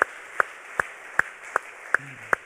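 One man clapping his hands: single sharp claps at an even pace, about two and a half a second, six in all.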